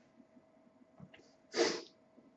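One short, sharp breathy burst from a person, a little after halfway through a quiet pause, preceded by a faint tick.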